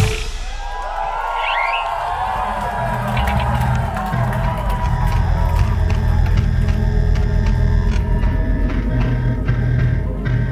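A live heavy metal band stops abruptly on a hard final hit, the crowd cheers and shouts, and a low, pulsing, droning intro to the next song builds under it.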